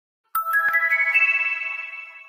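Focus timer app's alarm chime marking the end of a timed session: a quick run of ringing tones that steps upward in pitch, starting suddenly and fading out over about two seconds.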